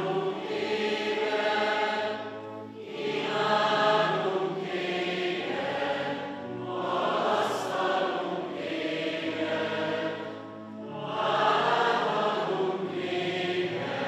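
Many voices, congregation and priests together, singing a Mass chant in unison. The phrases are long and pause briefly about every four seconds.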